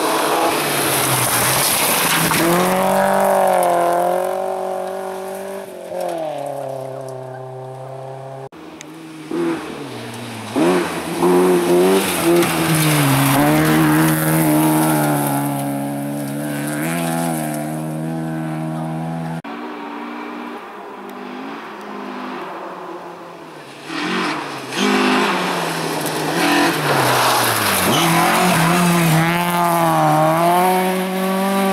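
Rally cars, Volvo saloons among them, running flat out one after another on a gravel special stage. Each engine revs up and drops through gear changes as the car approaches and passes, with gravel spraying from the tyres. A few sharp, loud spikes come about eleven to twelve seconds in.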